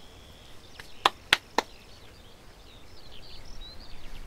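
Three sharp cracks of firewood at a brick wood-fired oven, close together about a second in, over faint bird chirping.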